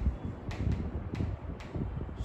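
A pen writing on an interactive touchscreen board: a few faint taps and scrapes over a low, steady room rumble.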